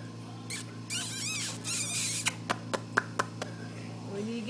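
A young child making high-pitched squeaky vocal sounds for about a second, followed by a quick run of about six sharp clicks, over a steady low hum.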